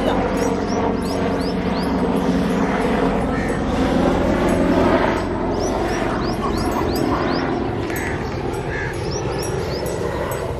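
Small birds chirping again and again, short falling chirps, over a steady background murmur and low hum.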